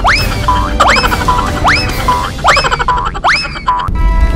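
Cartoon sound effect: a quick rising whistle-like glide repeated about every 0.8 s, five times, each followed by a short steady beep, over backing music. It cuts off abruptly at the end.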